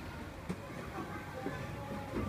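Outdoor ambience: a steady background hubbub with faint voices and music, and one sharp click about half a second in.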